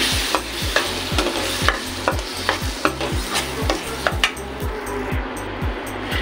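Metal spoon stirring and scraping roasted gram flour and semolina in hot ghee in a steel pan, with a steady sizzle that thins out about four seconds in.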